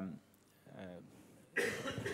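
A speaker's voice trails off into a short pause, then a cough about one and a half seconds in.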